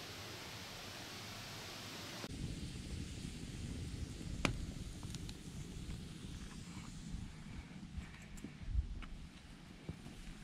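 A steady hiss for about two seconds, then a low rumble with a handful of sharp pops and crackles from a burning wood campfire. The loudest pop comes about halfway through.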